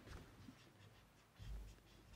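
Faint scratching of a marker writing on a whiteboard, with a soft low thump about a second and a half in.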